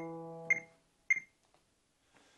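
Digital piano holding the final E of an E major scale, both hands an octave apart, dying away and released under a second in. A metronome clicks at 100 beats a minute, twice more, and then it stops.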